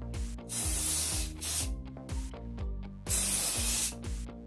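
Aerosol can of silver-grey hair colour spray hissing onto hair in two bursts, each about a second long, with background music underneath.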